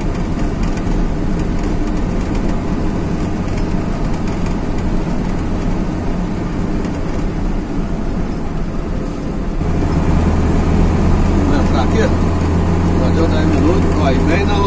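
Motor vehicle engine and road noise heard from inside the cab while driving, a steady low hum. About ten seconds in, the engine note gets louder and more even.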